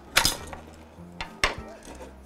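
The metal top cover of a surge protector coming apart from its plastic base: a sharp clack just after the start and a smaller click about a second and a half in.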